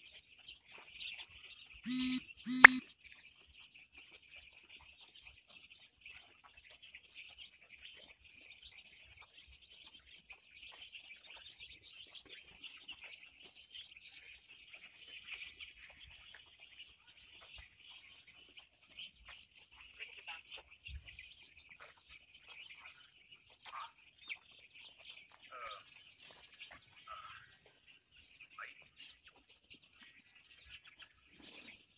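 A large flock of eight-day-old chicks peeping continuously in a dense high chorus. About two seconds in come two short, loud bursts close together.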